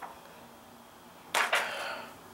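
Protective plastic film being peeled off a tablet's surface: a short, loud rip lasting about half a second, starting after a little over a second, with a faint click at the start.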